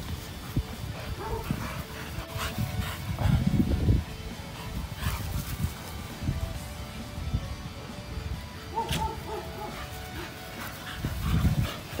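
Staffordshire bull terriers play-fighting, barking and growling in irregular bursts that are loudest about three seconds in and again near the end.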